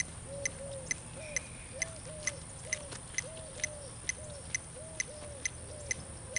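Metronome ticking at an even beat, a little over two sharp ticks a second, setting the pace for heelwork.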